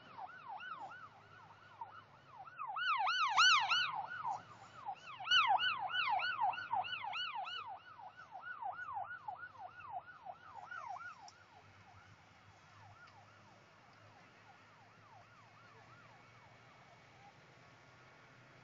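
Emergency vehicle siren in a fast yelp, its pitch sweeping up and down about four times a second, swelling twice in the first few seconds and then fading away about two-thirds of the way through, leaving a faint steady background.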